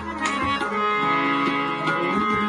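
Harmonium playing held notes and chords, with a long sustained note about halfway through, accompanied by a few light tabla strokes; the deep bass-drum strokes drop out early on.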